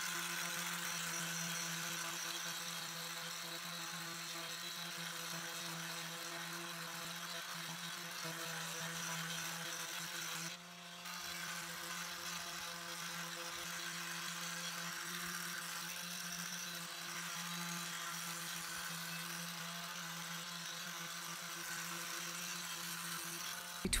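Handheld electric sander running steadily as it sands the old finish off a wooden tabletop, a constant whirring hum with the sandpaper rasping on the wood. It drops out briefly about ten and a half seconds in, then carries on.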